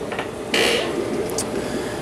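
Steady hum of aquarium equipment in a fish room, with a brief creak about half a second in and a couple of faint ticks.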